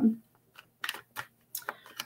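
A handful of light, irregularly spaced clicks.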